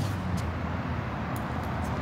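Steady low background rumble with a couple of faint clicks.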